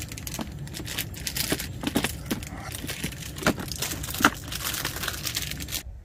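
Rice paddle scraping and tapping in a metal pressure-cooker pot while freshly cooked rice is scooped and fluffed: a busy run of soft crackly scrapes with a few sharper knocks. It cuts off suddenly just before the end.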